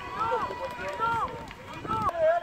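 Distant shouted calls from players and people on the touchline, several voices overlapping in short rising-and-falling cries.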